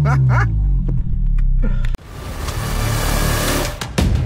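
Volkswagen Golf 7 GTI engine heard from inside the cabin, its note falling in pitch, with a brief burst of voice at the start. About two seconds in, the sound cuts off and a rising whoosh swells into outro music.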